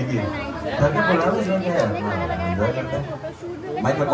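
Speech only: people talking over one another.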